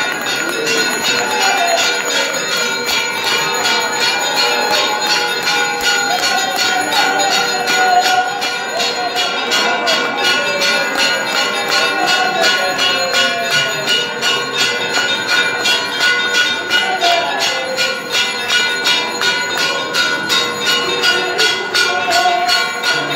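Temple bells rung continuously for aarti in quick, evenly repeated strokes, their ringing tones held steady throughout, with the voices of the crowd rising and falling over them.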